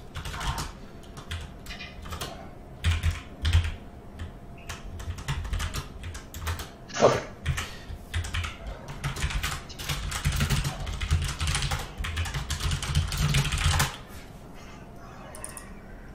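Typing on a computer keyboard: irregular bursts of key clicks, densest in a long run from about nine to fourteen seconds in. There is one brief, louder sound about seven seconds in.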